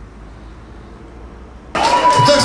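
A steady low rumble of outdoor background noise, then about 1.7 s in an abrupt cut to loud live band music with a long held note.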